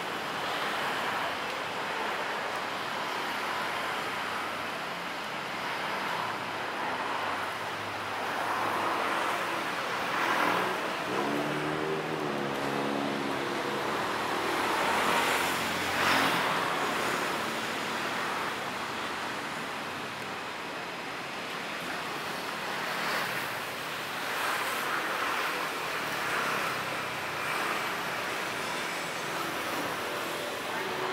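Steady city street traffic noise, with vehicles passing that swell and fade every few seconds. A short wavering pitched sound comes through about twelve seconds in.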